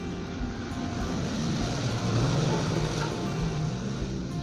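Motorcycle engine running, building to its loudest about two seconds in and staying loud to the end, over background music.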